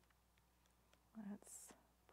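Near silence with a faint low room hum, then a woman quietly says "let's" about a second in.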